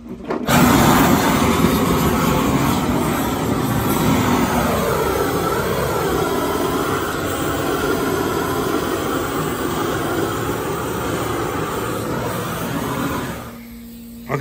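Long-wand propane torch burning with a steady rushing noise as its flame chars the bare wood of a table. It comes on suddenly about half a second in and cuts off shortly before the end.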